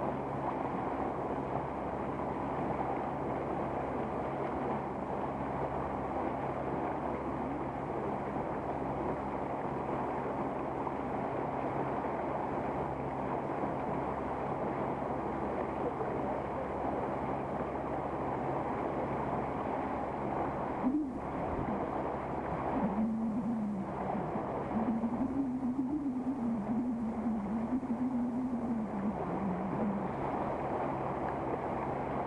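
Small motorboat under way, its outboard engine running steadily with water rushing and splashing along the hull. A single sharp knock comes about two-thirds of the way through, and a wavering tone rises and falls over the last several seconds.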